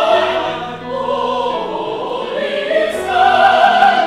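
Mixed church choir singing an anthem in parts, with long held chords. The sound dips about a second in and swells again near the end.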